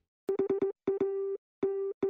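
Morse code sent as a steady beeping tone: four quick dits, then a dit and a dah, then a dah, the letters H and A and the start of M, spelling out "HAM".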